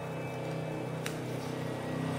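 Scissors cutting paper: one sharp snip about a second in, over a steady low hum.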